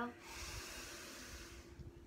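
A woman's long, deep audible inhale, lasting about a second and a half, fading out about two-thirds of the way in.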